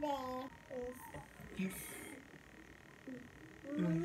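Short voice sounds at a family meal: a brief gliding vocal sound at the start, a spoken "yes" about a second and a half in, then a quiet pause before talking starts again near the end.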